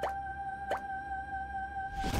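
Two short rising pop sound effects, one right at the start and one about three-quarters of a second in, over a steady held tone of background music.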